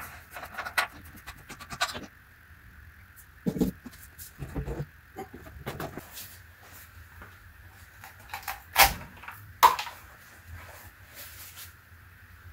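Scattered knocks, bumps and clicks of handling as a Dobsonian telescope's tube is taken off its rocker-box base and the base is wiped down with a cloth, with a few louder knocks partway through.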